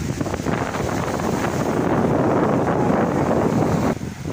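Wind buffeting the microphone, growing louder through the second half, over the wash of small waves breaking on the shore; it cuts off suddenly at the end.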